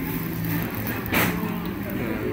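Busy café room ambience: background voices over a steady low hum, with a short burst of noise about a second in.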